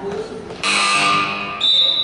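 A loud pitched tone sounding for about a second, starting just over half a second in, followed by a higher, thinner steady tone near the end.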